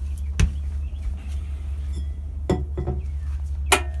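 Two sharp metal clinks from the RV's oven and range being handled, one about half a second in and a louder, briefly ringing one near the end, over a steady low hum.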